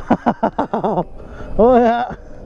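A man laughing in quick bursts for about a second, then a short held vocal sound near the end.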